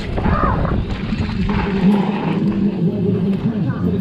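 Helmet-camera audio of a downhill mountain bike run on a dirt track: steady rushing ride noise, with voices shouting near the start and near the end.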